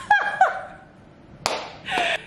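A woman laughing in short bursts, with one sharp clap of the hands about one and a half seconds in, followed by a breathy laugh.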